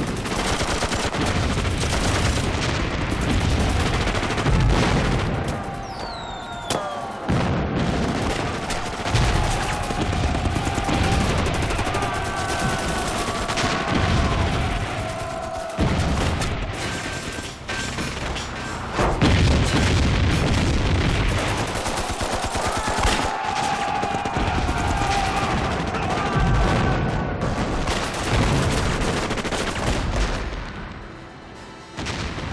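Battle sound effects: rapid gunfire and machine-gun fire with booming explosions, going on without a break, over a music score.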